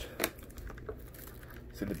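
Quiet room tone in a pause between a man's sentences, with one short click just after the start and his voice returning near the end.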